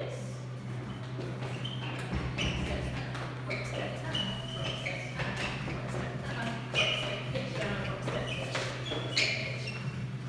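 Dancers' feet stepping and shuffling on a tiled floor during swing outs, with scattered light taps and thuds over a steady low hum.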